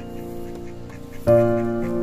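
Background piano music with held chords, a new chord struck a little over a second in. Mallard ducks quack faintly beneath it.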